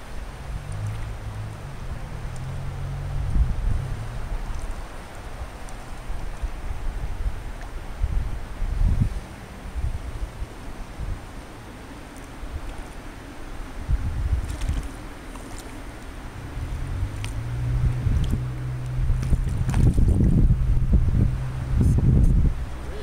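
Wind buffeting the camera microphone, a low rumble that swells and falls in gusts, with a few light clicks in the last several seconds.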